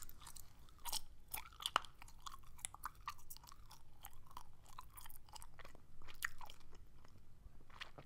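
Gum chewing close to a microphone: irregular soft wet clicks and smacks of the mouth.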